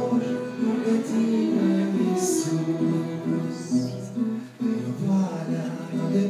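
A church instrumental ensemble with brass plays a hymn interlude between sung verses: held chords with a melody moving above them.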